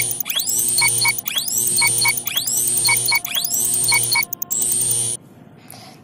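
Countdown-timer sound effect: a rising whoosh with a pair of short beeps, repeating about once a second and stopping about five seconds in.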